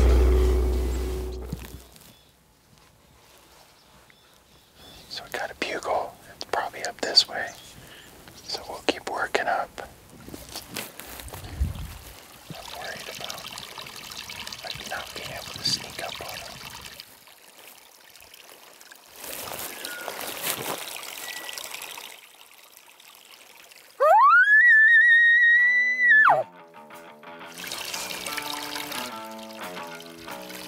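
Elk bugle about 24 seconds in: a whistle that rises steeply to a high, held note for about two seconds and cuts off, followed by a run of low, stepped chuckles. Before it come soft whispers, and music fades out in the first two seconds.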